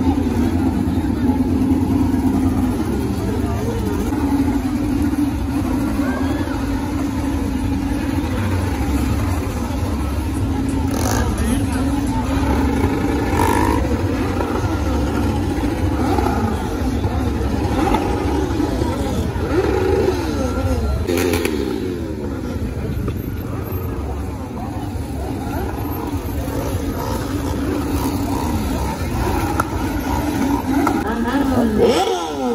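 Crowd chatter over motorbike and quad-bike engines running and revving, with several rising and falling revs about twenty seconds in.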